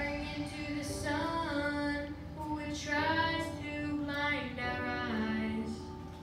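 A young boy singing solo into a microphone, holding long notes that slide up and down in pitch.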